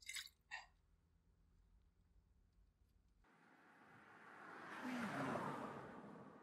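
A faint low drone of a car's interior at first, cut off abruptly. Then a car passes on the road: its tyre and engine noise swells to a peak about five seconds in and fades as it drives away.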